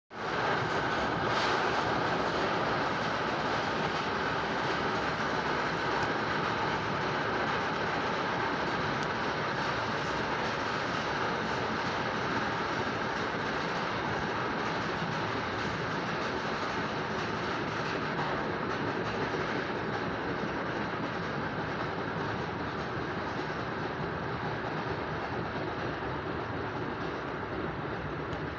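Steady running noise of a moving NJ Transit commuter train heard from inside the passenger car, a continuous rushing rumble of the rail car on the track that eases slightly toward the end.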